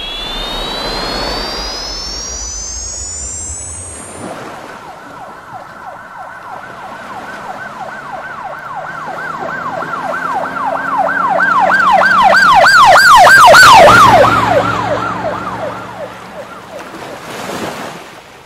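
A rising electronic sweep tone for the first few seconds. Then a siren with a fast up-and-down wail grows louder, drops in pitch about two-thirds of the way through as it passes, and fades away.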